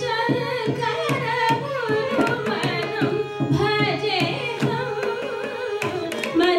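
A female Carnatic vocalist sings a flowing, ornamented line with violin accompaniment, over a steady drone. A mridangam plays a dense run of strokes under the voice.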